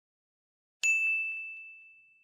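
A single bright bell ding from a notification-bell sound effect. It strikes about a second in and rings out in one clear high tone that slowly fades.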